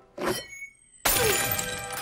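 A dimpled glass pint mug smashes about a second in: a sudden, loud shatter with the shards ringing on as it fades, over film-score music.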